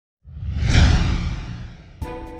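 A whoosh sound effect with a deep rumble for an animated logo intro, swelling in about a quarter second in and fading away over the next second and a half.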